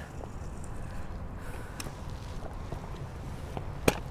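Quiet outdoor background: an even low rumble with a few faint ticks, and one sharp click just before the end.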